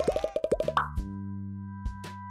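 A rapid run of about ten cartoon-style plop sound effects in under a second, like pop-it bubbles popping, followed by a short rising sweep and a held chord of background music.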